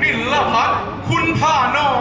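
A man's voice reciting Thai verse in the drawn-out, sing-song chant of khon narration, in two phrases with notes held near the end.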